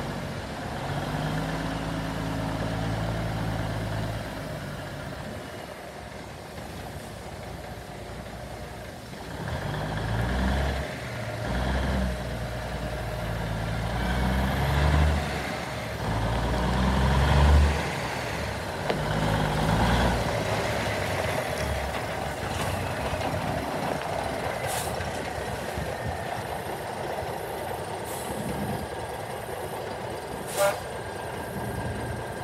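Old flatbed semi truck's diesel engine driving off and pulling around a gravel yard, its revs rising and falling several times as it works through the gears. It is loudest in the middle, then runs steadier and lower near the end.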